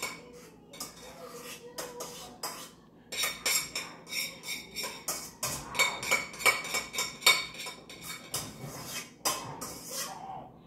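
Dishes and metal cutlery being handled, a quick, irregular string of clinks and clatters with a metallic ring, busiest from about three seconds in.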